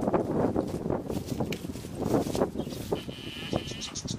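Goats bleating and scuffling about as they jostle one another.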